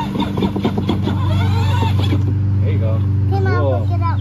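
A steady, even low motor hum, with young children's voices chattering over it in the first second and again near the end.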